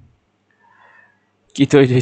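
Mostly quiet at first. About one and a half seconds in, a man's voice begins a long, drawn-out vocal sound that wavers in pitch, a stretched filler sound rather than clear words.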